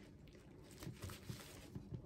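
Very quiet room with a few faint light taps and rustles from handling.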